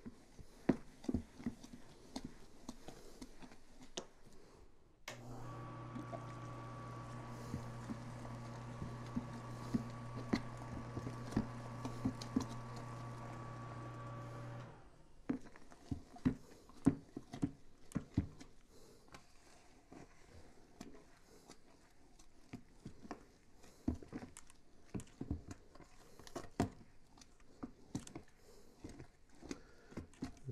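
Thick grain mash being stirred by hand in a plastic cooler mash tun, the paddle knocking and squelching irregularly. About five seconds in, a small electric motor starts humming steadily; it cuts off about ten seconds later.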